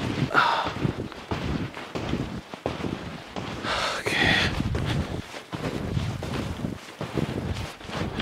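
Wind buffeting a handheld camera's microphone: an uneven, rumbling rush with two louder gusts, about half a second in and again around four seconds in.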